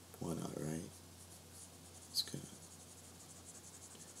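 Faint, fine scratching of a pen stylus dragging across a drawing tablet in sculpting strokes, with a sharp tick about two seconds in. A short voiced sound from the man comes just after the start.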